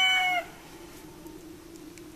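Rooster crowing: the end of a long, held crow that stops with a slight drop about half a second in. After it, only a faint steady low hum remains.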